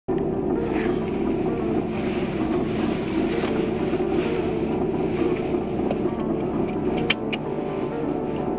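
Car engine idling steadily, heard from inside the cabin, with two sharp clicks close together near the end.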